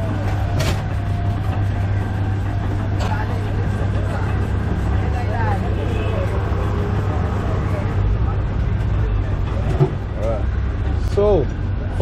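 Motorised sugarcane juice crusher running with a steady low hum as cane is fed through its rollers. Voices come in briefly midway and near the end.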